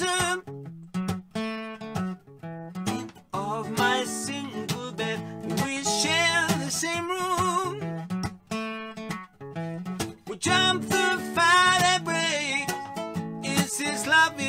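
A man singing to his own strummed acoustic guitar, with a few short breaks in the strumming.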